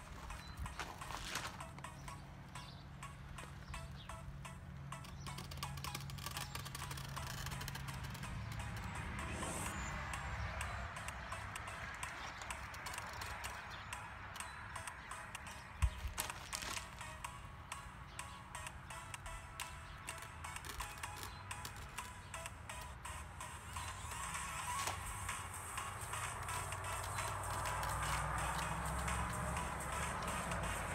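Quiet background music, with a single sharp knock about halfway through.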